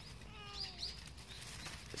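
A faint animal call: one short cry falling in pitch about half a second in, with a couple of brief high chirps around it.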